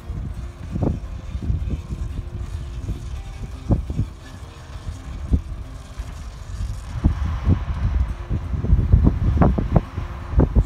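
Ruston-Bucyrus RB30 dragline's engine running steadily as it works its bucket, heard across open ground. Heavy wind buffets the microphone with irregular low thumps throughout.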